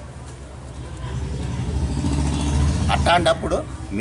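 Low engine rumble of a passing road vehicle, growing louder over about two seconds to a peak near the end.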